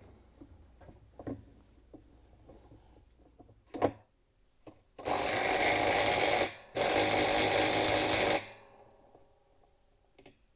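Cordless impact driver hammering a GE washer's reverse-thread hub nut tight through a 90 ft-lb torque-limiting extension and 1-5/16-inch socket, in two runs of about a second and a half each with a short break between. A sharp click comes about a second before the first run.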